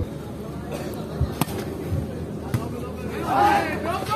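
Crowd and court background at a volleyball match, with a low thud and then two sharp slaps of the ball being struck, about a second and a half and two and a half seconds in. A man's voice calls out near the end.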